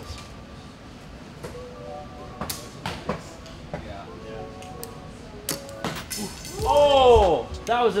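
A shot from a small recurve bow: a sharp snap as the string is released, and a moment later a click as the arrow strikes the target's scoring ring without sticking. A loud drawn-out "oh" of reaction follows.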